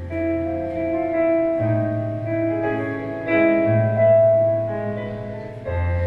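Stage electronic keyboard playing a slow instrumental introduction: sustained chords over a held bass note, moving to a new chord every couple of seconds.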